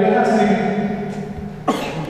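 A man's voice speaking through a handheld microphone, drawn out and slow, then a short sharp cough near the end.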